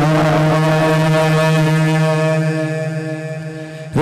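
A male naat reciter's voice holds one long, steady note, drawing out 'alayhi' in the salutation 'sallallahu alayhi wa sallam'. The note fades away over the last second.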